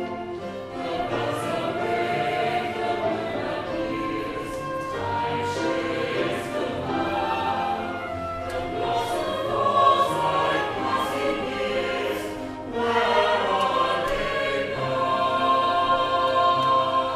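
A choir of men's and women's voices singing long held notes in a classical choral piece, with instruments accompanying.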